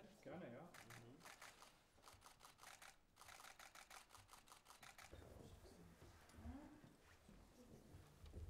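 Still-camera shutters firing in rapid bursts, several clicks a second overlapping from more than one camera, as press photographers shoot a posed handshake. The clicking stops about halfway through, and low voices follow.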